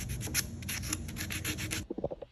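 Folded sheet of 100-grit sandpaper rubbed by hand along the grain in a tight wooden joint of a chair, a quick run of short back-and-forth strokes that stops shortly before the end.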